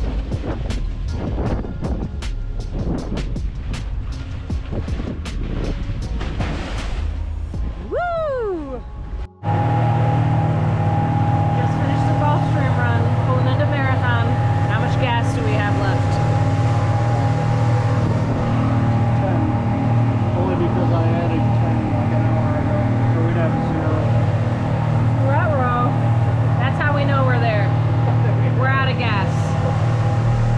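Background music with a steady beat for about the first nine seconds, then a sudden cut to a boat's engine running steadily with a loud low drone, with voices talking over it.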